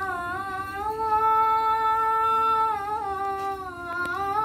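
Children's voices singing an Assamese dihanaam, a devotional chant to Krishna, in unison, holding one long note for about two seconds before the melody dips and moves on.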